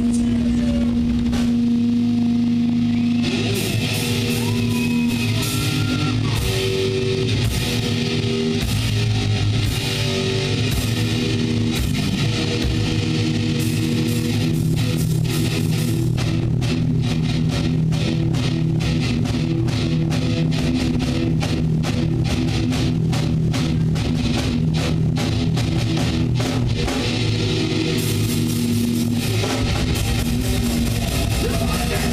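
A thrash metal band playing live: electric guitars hold a sustained note, then the drums and the rest of the band come in about three seconds in. From about halfway the drumming turns fast and dense under the guitars.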